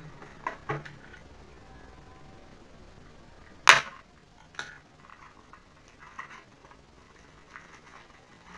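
Pastry packaging being handled: a few light knocks and rustles, with one loud sharp knock about halfway through and a smaller one just after.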